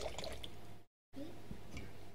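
Red wine being poured from a bottle into a wine glass, a soft splashing of liquid. The audio cuts out completely for a moment about a second in.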